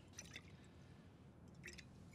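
Near silence: quiet room tone with a few faint small clicks, once near the start and again near the end.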